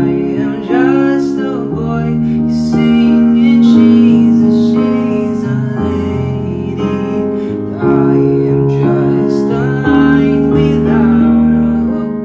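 Singing over piano accompaniment in a slow song, the chords changing about every two seconds.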